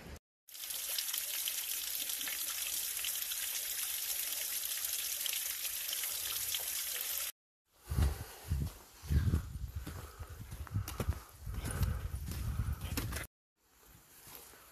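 Steady hiss of rushing water for about seven seconds. Then, after a short break, irregular footsteps crunching on a gravel and leaf-covered forest path.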